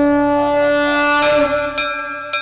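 A conch shell (shankha) blown in one long, steady, horn-like note.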